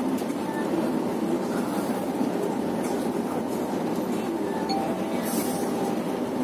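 Steady engine and road noise inside a moving coach, an even rumble with no change in level.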